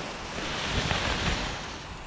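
Wind rushing over the microphone, a steady rush with low buffeting gusts that eases off near the end as the wing settles to the ground.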